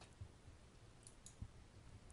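Near silence: room tone with a few faint short clicks, the strongest about a second and a half in.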